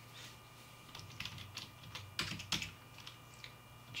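Computer keyboard being typed on: a faint run of irregular key clicks starting about a second in, as a command is typed into a terminal.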